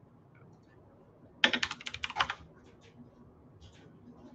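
Computer keyboard being typed on: a quick run of keystrokes lasting about a second, then a few scattered key presses.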